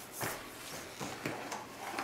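A few soft rustles and knocks from a fabric insulated cooler bag being handled and rummaged through by hand.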